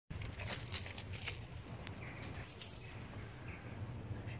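Two small dogs scuffling on a mesh reclining garden chair: a quick run of scratchy rustles and clicks in the first second and a half, then fainter scattered scuffles, over a low wind rumble on the microphone.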